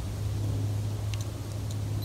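A steady low hum, with a few faint clicks from fingers working the buttons of a small camera.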